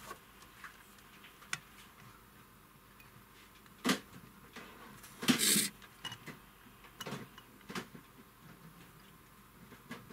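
Handling sounds on a wooden desk: a single knock about four seconds in as the circuit board is set down, a short scrape about a second later, and a few light clicks of the meter's test probes touching the board's solder joints.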